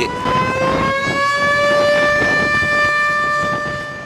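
Solar-powered air-raid warning siren sounding as an alert of an airstrike or shelling, its wail rising in pitch over the first couple of seconds and then holding steady. It stops suddenly near the end.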